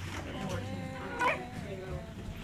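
Newborn baby crying in short wavering wails, with one louder cry a little over a second in.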